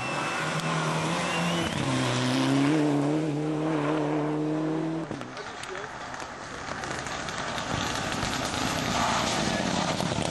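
Mitsubishi Lancer Evolution rally car's engine running hard at a steady pitch, the note dropping and filling out about two seconds in. About five seconds in, the engine note cuts off abruptly and a duller, noisier stretch follows.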